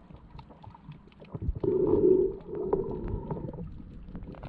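Underwater sound heard by a submerged camera: a muffled, gurgling water rumble that swells loudly about halfway through and again briefly just after, with faint scattered clicks throughout.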